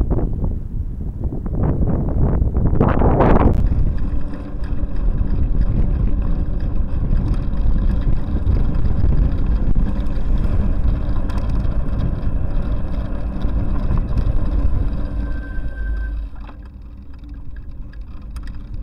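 Wind buffeting a bicycle-mounted camera's microphone in loud gusts for the first few seconds, then a steady rumble of road and traffic noise while riding, which drops off shortly before the end.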